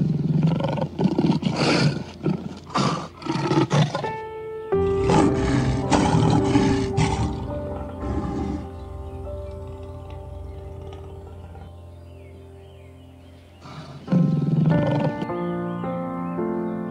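Lion roaring over background music: a run of short, loud grunting roars in the first four seconds, then one longer roar, and another loud burst near the end.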